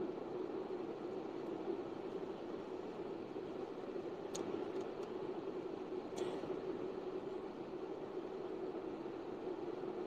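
Steady faint background noise on an open microphone, an even hiss with a low hum under it, and a couple of faint clicks a few seconds apart.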